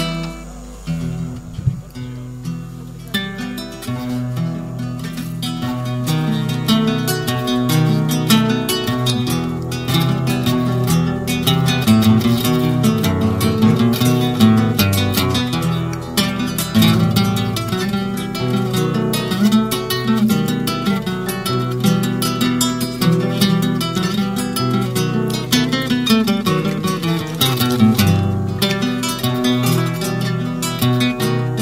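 Acoustic guitar playing the instrumental introduction to a milonga criolla, plucked and strummed, starting sparse and filling out after about three seconds.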